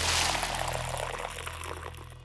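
Sound effect of a drink being poured into a glass, its bubbly hiss fading away, over a held low note of background music.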